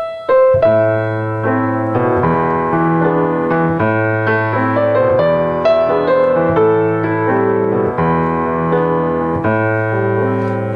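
Piano playing a short chordal passage in A minor, with a melody over a sustained bass line and chords that change about every one to two seconds. Its dominant chord is E major seventh (E7), with the raised G sharp that gives the harmonic-minor sound.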